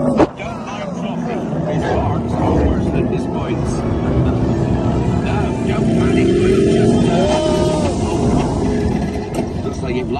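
Roller coaster motorbike-and-sidecar vehicle on Hagrid's Magical Creatures Motorbike Adventure running along the track, with a steady rumble, under the ride's onboard music and voices.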